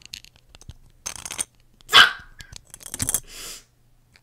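Plastic Lego bricks clicking and rubbing right against a microphone, with one loud, short bark-like yelp about two seconds in and a brief hiss a little after three seconds.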